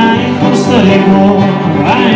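A string band playing bluegrass-style music: plucked and strummed strings under a sliding melody line, in a passage without sung words.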